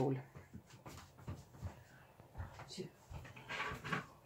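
Soft mouth sounds of a person tasting soup from a spoon: faint wordless murmurs and lip sounds, a few light clicks, and a louder breathy sound near the end.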